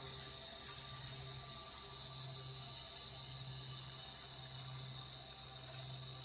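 A toy gyroscope, just spun up with its pull-string, spinning freely with a steady low hum, over a constant high-pitched whine from the gyroscopes' rotors.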